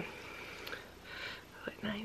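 A pause in a woman's speech: faint breathy mouth sounds over quiet room tone, ending in a short hummed 'mm' just before she starts talking again.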